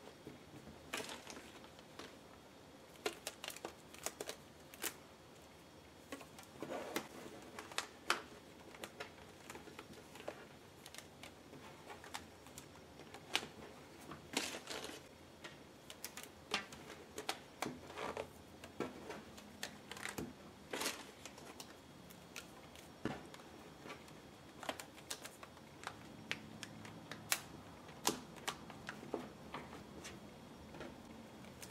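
Hands scrunching a damp cotton T-shirt into a bundle and wrapping rubber bands around it: faint, irregular small snaps and clicks with soft fabric rustling.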